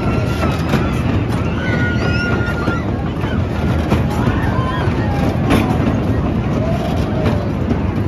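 Spinning race-car fairground ride running: a loud, steady mechanical rumble, with voices and a few clicks over it.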